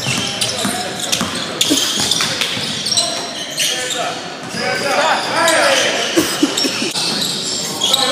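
A basketball being dribbled on a hardwood gym floor, sharp bounces echoing in a large hall, with players and onlookers calling out, loudest past the middle.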